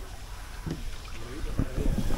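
A small hand-rowed wooden boat moving along a canal, heard as a steady low wind rumble on the microphone with a few soft low knocks, once under a second in and again near the end.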